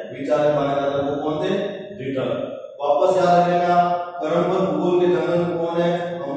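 Only speech: a man lecturing in Hindi in a drawn-out, chant-like voice, holding long syllables of about a second each with short breaks between phrases.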